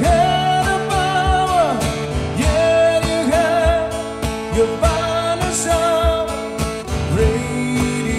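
Acoustic guitar strumming over a steady low thumping beat, with long, wavering sung notes without words.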